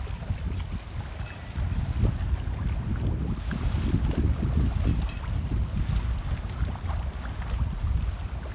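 Wind buffeting the microphone in a low, uneven rumble, over choppy water washing against a concrete seawall.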